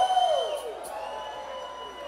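Concert crowd cheering and whooping in answer to the singer's call, with a few voices shouting in rising-and-falling yells, loudest at the start. A steady high tone holds underneath.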